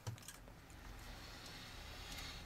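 Faint clicks and handling noise from a partly disassembled Canon EOS 350D camera body being turned over in gloved hands, over a low steady hum.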